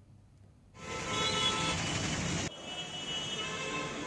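Street traffic noise starting about a second in, then cut off abruptly past the middle for a quieter background hum with faint tones.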